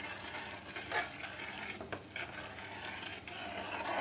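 A metal ladle stirring and scraping the bottom of a metal kadai of thick, bubbling tamarind chutney, a rough continuous scrape with a few sharper scrapes about one and two seconds in. The chutney has cooked down and thickened and is near its finished consistency.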